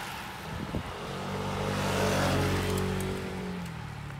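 A motor vehicle driving past, its engine hum and tyre noise swelling to a peak about two seconds in and then fading, the pitch dropping slightly as it goes by.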